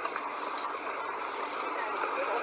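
City street noise: a steady hum of traffic with faint distant voices, thin-sounding with no bass.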